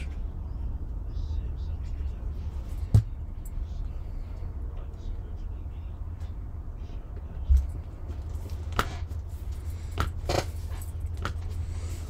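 Hands handling paper in a journal: a sharp click about three seconds in, a dull thump, then a few soft paper rustles, over a steady low hum.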